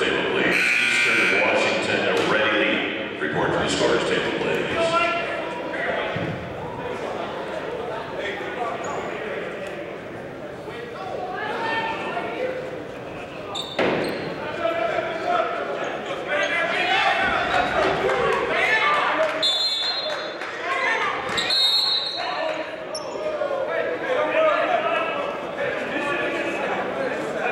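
Basketball game in a gym: voices of players and spectators echoing in the hall, with a ball bouncing on the hardwood floor. There is a sharp knock about halfway through and two short high squeaks a couple of seconds apart about three-quarters of the way in.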